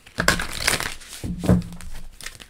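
Irregular rustling and crinkling handling noise in several short bursts, with a brief low hum near the middle.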